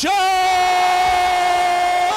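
A male TV commentator's long, held shout on one steady high note, the excited yell that follows a three-point shot.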